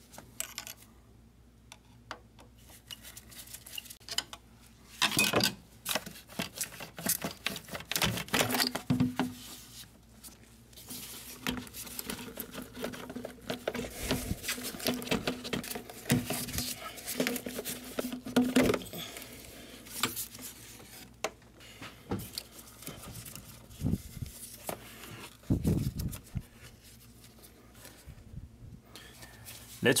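Hands working a ribbed rubber-and-plastic engine air intake tube loose: irregular clicks, knocks and rubbing of plastic and rubber parts, in a few louder clusters.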